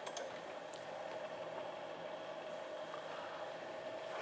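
Quiet lecture-room tone: a steady hiss with a faint constant hum, and no distinct events.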